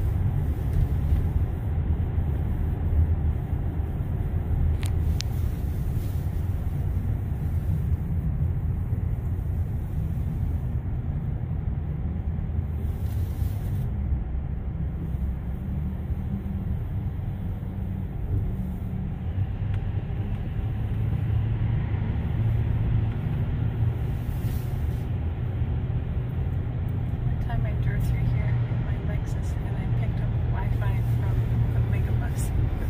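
Steady low road rumble and tyre noise heard from inside the cabin of a Tesla electric car driving through a road tunnel, with traffic around it.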